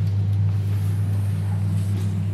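A loud, steady low hum with no rhythm or change in pitch.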